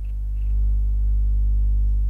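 A steady low hum that gets louder about half a second in.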